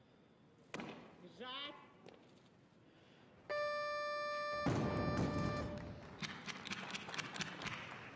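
A thud and a short rising shout as the barbell is driven overhead in the jerk. About three and a half seconds in, a steady electronic beep of about two seconds sounds, the referees' down signal for a good lift, and the arena crowd breaks into cheering and clapping.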